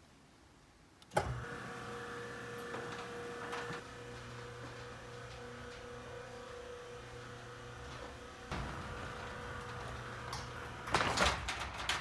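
Electric roller shutter door closing: its motor starts with a click about a second in and runs with a steady hum as the shutter comes down. A louder rattle near the end, then the sound stops abruptly as the shutter closes.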